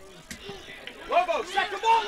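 Faint crowd and field voices at an outdoor soccer match, with one raised voice calling out about a second in.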